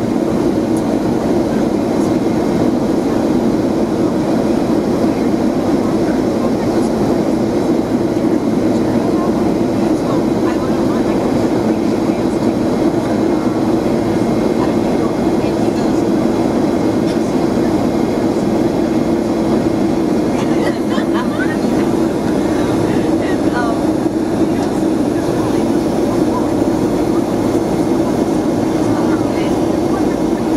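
Steady drone inside an airplane cabin in flight: engine and air noise with a strong low hum that holds level throughout.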